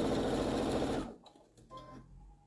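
Brother electric sewing machine stitching a seam through fabric at a fast, even pace, then stopping abruptly about a second in.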